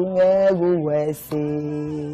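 A single voice singing or chanting slow, long-held notes that step down in pitch, with a short break a little past the middle.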